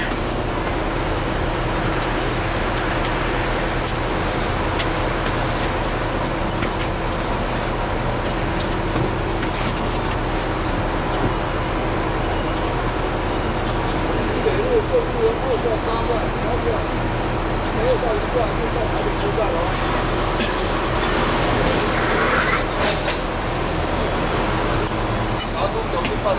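MCI 96A3 coach's diesel engine idling steadily while the bus stands at a stop, heard from inside the cabin. From about halfway through, voices talk over it, with a few light clicks.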